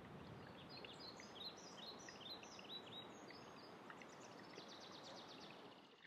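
Very faint birdsong: a string of short high chirps, then a rapid high trill near the end, over steady quiet outdoor background noise.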